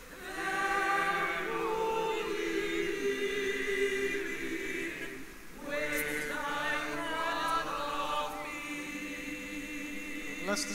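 A choir singing a hymn phrase in held, wavering notes, sung as two phrases with a brief breath break about five and a half seconds in.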